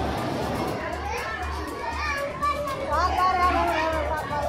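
Children's voices calling and chattering over background music with a steady low beat.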